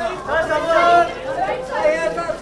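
Several voices talking over one another: chatter, with no other sound standing out.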